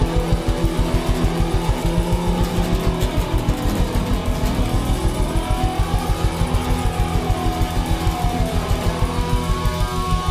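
Rock band playing an instrumental passage: drums keep a fast, even beat under guitars, over which a tone sweeps up and down in pitch again and again.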